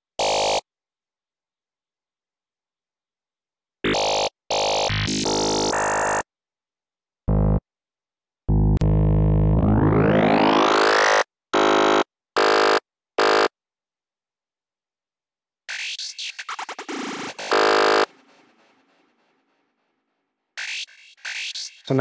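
FM lead synth in Serum playing the "FM Tone 01" wavetable preset in a short stop-start riff: clipped notes that cut off sharply with silence between them. A long note near the middle rises in pitch over about two seconds, and a sweeping note later on fades out slowly.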